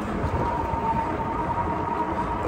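Wind and road rumble on the microphone of a moving electric bike, with a steady high whine from its motor that sets in just after the start.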